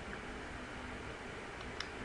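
Quiet room tone with a steady hiss, and a single short click near the end.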